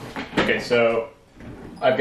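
A man's voice, briefly, after a couple of short knocks near the start, then a pause before he speaks again.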